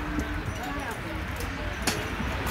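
Background voices of people talking over a steady low rumble, with one sharp knock near the end.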